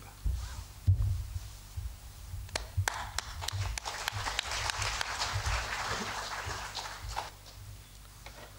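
Applause from a small audience, starting about two and a half seconds in and dying away near the end, after a few low thumps.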